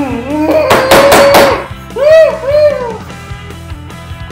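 A man gagging on a mouthful of baby food: a loud, drawn-out retching groan about a second in, then two shorter rising-and-falling groans, over steady background music.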